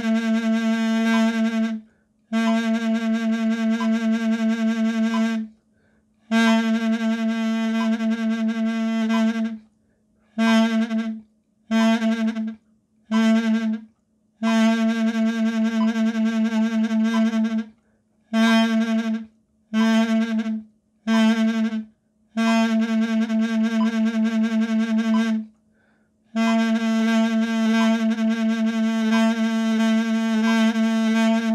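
Mey, the Turkish double-reed wooden pipe, played on one repeated low note (la). It sounds in a dozen or so phrases of long held notes and shorter notes, broken by brief pauses for breath, with vibrato making the tone waver.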